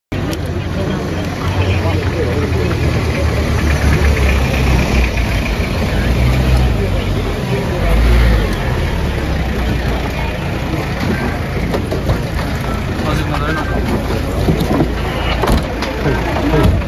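Indistinct voices of a gathered crowd outdoors over a constant low rumble.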